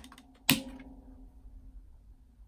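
A single sharp plastic click about half a second in as a DVD is popped off the centre hub of its black plastic case, followed by a brief rattle dying away.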